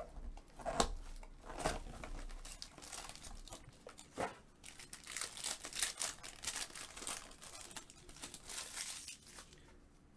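Foil wrapper of a Topps Supreme football card pack being torn open and crinkled by hand, in irregular sharp crackles that grow denser in the second half.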